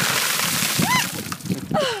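A bucket of ice water dumped over a person's head: a sudden rush of splashing water and clattering ice lasting about a second. It is followed by a high rising-and-falling yelp and a falling cry at the cold.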